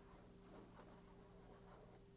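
Near silence: a faint steady hum with a few faint ticks.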